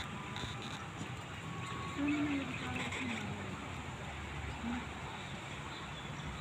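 Steady outdoor background noise with faint, brief distant voices, the clearest about two seconds in.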